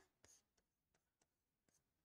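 Near silence, with a few faint taps of a stylus writing on an interactive display board.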